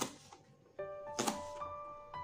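A kitchen knife chopping through a spring onion onto a plastic cutting board, one sharp chop a little over a second in. Background music is playing with it and comes back in just before the chop.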